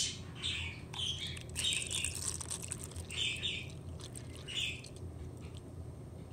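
Prep & Etch phosphoric-acid rust treatment being poured into a plastic tub of rusty steel bolts, coming in about five short gurgling spurts over a low steady hum.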